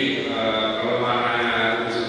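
A man speaking into microphones: speech only, with long, drawn-out syllables.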